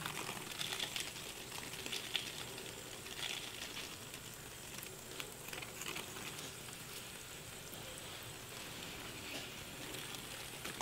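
Hand mister spraying water into a glass terrarium in several short hissing bursts, with water pattering on the glass and leaves.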